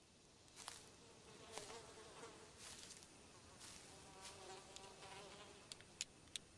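Faint buzzing of flies, a wavering drone over quiet outdoor ambience from a film soundtrack, with a few soft clicks.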